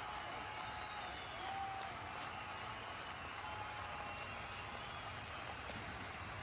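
Steady low-level background noise with a few faint held tones.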